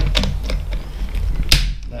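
Plastic clicks and knocks as a GoPro housing is pushed into the back of a Shoot dome port. The sharpest click comes about one and a half seconds in.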